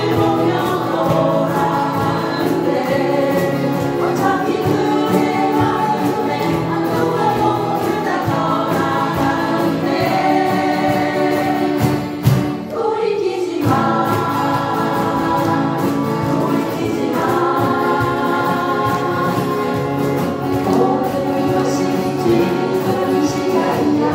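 An ensemble of acoustic guitars strummed together while the group sings in unison. The music breaks briefly about twelve seconds in, then carries on.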